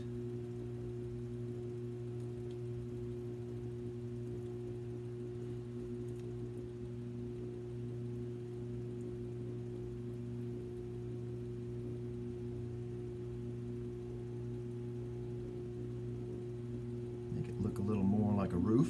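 Electric potter's wheel motor running at a steady speed: a low, steady hum.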